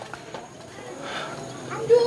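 Faint voices in the background with light footsteps on a stone-paved path, and a short voiced sound near the end.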